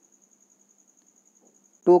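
Near silence with a faint high-pitched whine pulsing about ten times a second; a man's voice starts just before the end.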